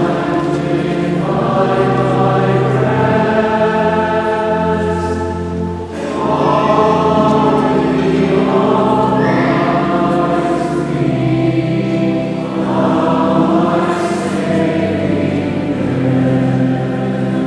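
A choir singing slowly in long held notes, with a short break between phrases about six seconds in.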